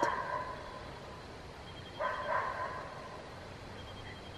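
A dog barking, once at the very start and again about two seconds in.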